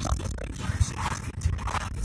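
Road and engine rumble inside a moving car's cabin, with irregular scraping and rustling close to the microphone.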